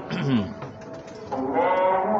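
Background song: a singing voice holding long notes, with a short break in the middle.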